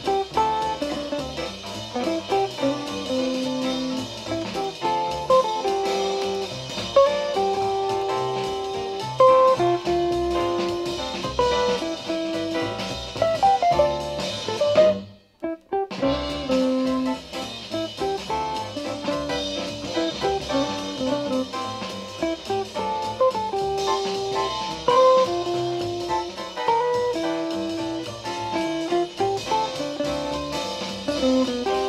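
Jazz guitar with bass and drums played back from a vinyl record on a hi-fi system (Pioneer PL-30L II turntable with a Technics 205C-IIL cartridge, Yamaha CA-R1 amplifier, JBL 4301 speakers) and heard in the room. About halfway through the music drops out for about a second, then carries on.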